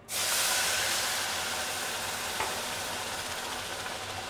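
Cold water poured onto hot, freshly toasted millet groats in a pan, hissing and steaming as it boils on contact. The hiss starts suddenly and eases a little over the next few seconds.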